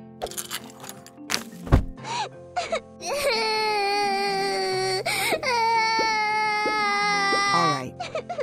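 A cartoon girl's voice wailing in two long sustained cries, each sliding slightly down in pitch, after a few short clicks and a thud. Light background music runs underneath.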